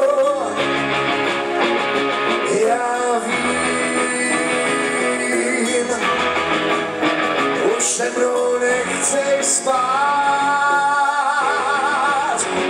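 A live rock band playing, with electric guitar, drums and singing; a sung line is held with vibrato near the end.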